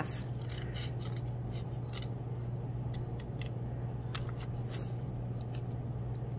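Scissors snipping through folded construction paper in short, irregular cuts, over a steady low hum.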